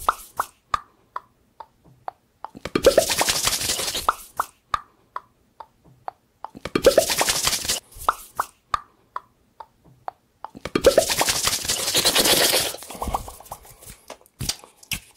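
Close-miked ASMR mouth sounds: a string of short, hollow mouth pops, two or three a second, broken three times by louder rushing bursts lasting one to two seconds each.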